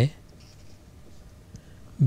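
Marker pen writing on a whiteboard: a few faint scratchy strokes, then the pen is lifted.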